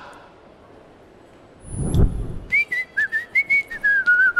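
A person whistling a tune in short stepping notes, starting about two and a half seconds in over light clicking beats. Just before it, about two seconds in, comes a short low whoosh.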